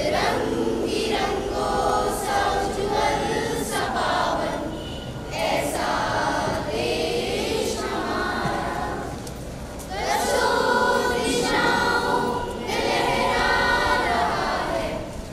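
A choir of school children singing together in unison, in phrases separated by brief breaks for breath.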